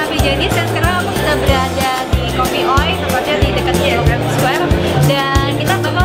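Upbeat background music with a steady beat and a repeating bass line, under a woman's speaking voice.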